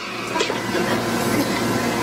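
Steady rushing background noise with a faint hum in it, setting in as the talking stops.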